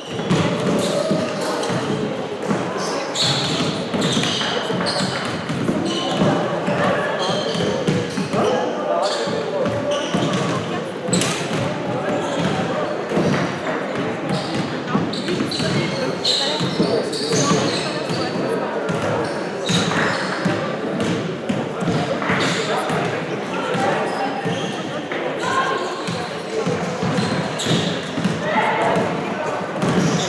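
A basketball being dribbled and bouncing on a gym court during play, with indistinct players' calls and chatter, all echoing in a large sports hall. Sharp short knocks come throughout.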